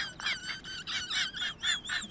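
Rapid high-pitched squeaking chirps, about five a second, that run into a wavering, warbling whistle near the end.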